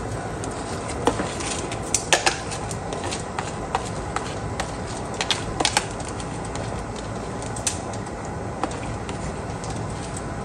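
Chicken stock boiling in a steel pot just after soaked rice is added: steady bubbling with irregular sharp pops.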